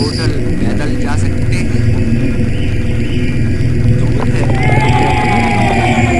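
Experimental musique concrète sound collage: a dense, steady low drone layered with noise and scattered gliding tones, with a long, slowly falling tone coming in about four and a half seconds in.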